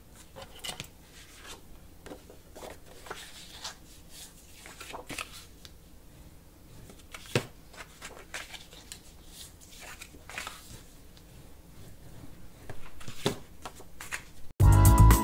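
Scored kraft cardstock being folded along its score lines and handled on a tabletop: irregular soft paper rustles, slides and taps, a little louder near the end.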